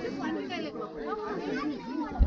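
Several people talking at once: overlapping chatter of a group standing together.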